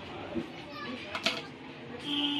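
Indistinct background voices of people talking, with a sharp click a little over a second in.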